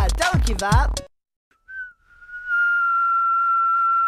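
A song with a beat cuts off about a second in. After a short pause and a brief chirp, a single steady high whistling tone starts and holds without a break.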